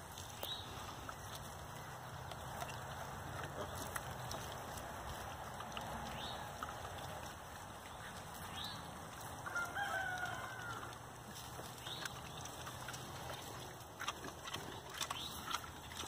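A rooster crows once, faintly, about ten seconds in.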